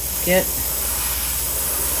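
Airbrush spraying paint in a steady hiss of air, with a low fan hum beneath.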